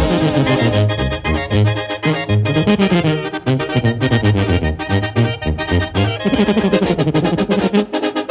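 Mexican banda playing a son live: clarinets and trombones over a steady tuba bass line, with drums keeping a regular beat.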